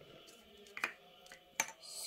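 Two sharp little clicks, plastic and glass pieces of a toy chemistry kit knocking together as a pipette and tube are handled, with a soft hiss near the end.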